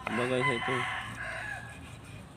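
A rooster crowing once: one long call of about a second and a half that sags in pitch at the end.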